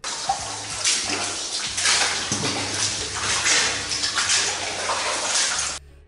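Water sloshing and splashing: a steady wash of noise with a few louder surges, over a faint low hum.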